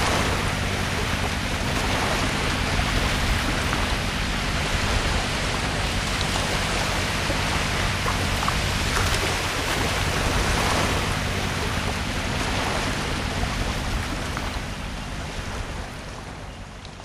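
Steady wash of sea surf breaking on a shallow sandy beach, an even hiss of water that fades out near the end.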